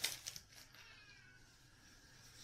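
A plastic wrapper crinkles briefly at the start. Then comes a faint, thin, falling call, a cat meowing in the background.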